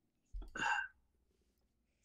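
A single short vocal sound from a man, under a second long, starting with a soft bump, like a hiccup or a clipped syllable.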